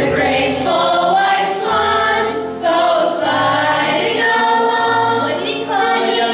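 A mixed choir of high school students singing a slow song in long held notes.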